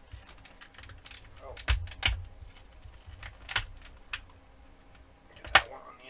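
Clear plastic bait bag crinkling and crackling as a soft plastic craw bait is worked out of it by hand, in a few sharp crackles with the loudest near the end.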